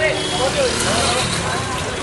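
Raised voices shouting indistinctly over a steady background of outdoor noise.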